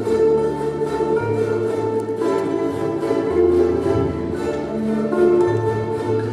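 Ukulele ensemble strumming the instrumental introduction of a song, with a bass line that changes note about once a second under the steady strums.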